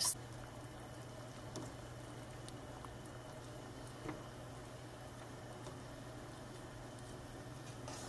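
Steel pot of water at a rolling boil with taralli dough rings cooking in it, bubbling softly and steadily, with a few faint clicks.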